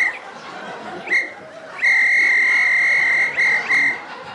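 Comic whistle sound effect standing in for a whistling fart, one steady high note each time. It gives a short toot at the start and another about a second in, then one long toot of about a second and a half, and two quick toots near the end.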